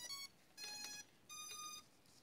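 MJX Bugs 4W drone beeping as it powers up: a quick run of short notes, then two longer beeps of about half a second each, faint.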